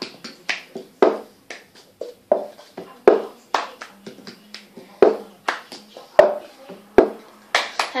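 Cup-song rhythm played by hand: claps, taps on the table and a cup lifted and knocked down on the tabletop, in a repeating pattern with the heaviest knock about every two seconds.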